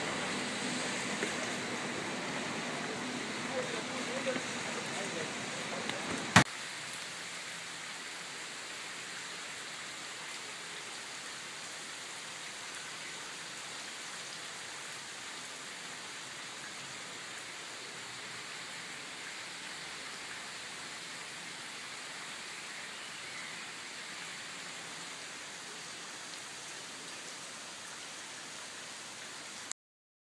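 Steady rain falling on wet pavement, an even hiss. A single sharp click about six seconds in, after which the rain is slightly quieter and steadier until it cuts off suddenly just before the end.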